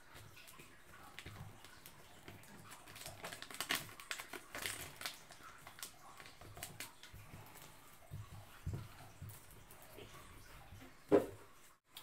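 Clear vinyl transfer tape and a vinyl sheet handled by hand: scattered crinkling and crackling of plastic film, busiest a few seconds in, with a short knock near the end.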